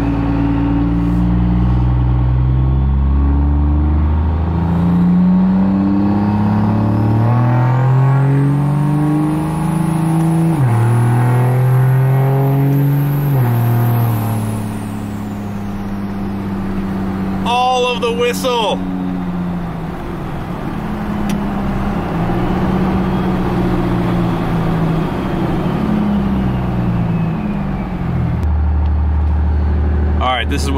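Cummins turbo-diesel in a Dodge Ram pickup, heard from inside the cab, pulling away from a stop. Its pitch climbs and then drops at an upshift about ten seconds in, climbs again and drops near the fourteen-second mark, while a high turbo whistle rises and falls with it. It then cruises at a steadier, lower pitch and falls back to a low idle near the end, as the automatic transmission is tested in manual mode after a fluid fill.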